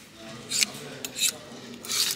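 Metal hooks of wooden clothes hangers scraping along a metal clothes rail as they are pushed aside one by one: three short scrapes about two-thirds of a second apart.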